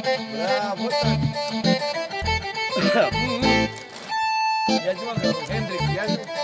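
Roland digital accordion playing a fast instrumental melody, with a long held note about four seconds in.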